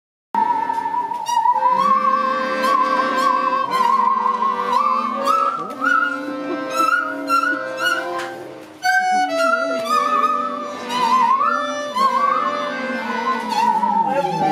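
Two bowed musical saws playing a slow melody with a wide, wavering vibrato and sliding between notes, over sustained chords from a piano accordion. The music dips briefly about eight and a half seconds in, then comes back in strongly.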